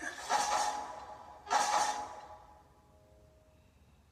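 Closing sound-effect hits of a movie trailer heard through the speakers: two sudden noisy swells about a second apart, each fading away, followed by a faint short tone.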